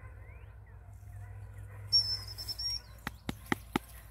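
Wild songbirds chirping faintly with short rising calls. About halfway through there is a brief loud knock and a high thin whistled note lasting under a second, and a few sharp clicks follow near the end.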